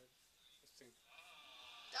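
Faint, distant voices from the hall, barely above room tone, with a thin steady high tone coming in about a second in.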